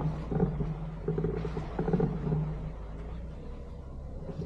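Suzuki Jimny's engine running as it drives slowly along a rough dirt track, a steady low drone that swells and eases, with occasional knocks and rattles from the body over the bumps.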